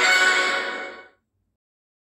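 Closing theme music of a TV news programme, fading out about a second in, then silence.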